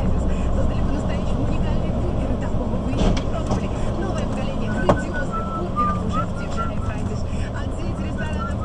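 Steady engine and road drone heard from inside a moving vehicle's cab, with sharp knocks about three and five seconds in.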